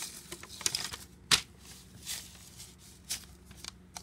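A paper sheet rustling as it is handled, with several sharp taps and knocks, the loudest about a second and a half in and another near the three-second mark.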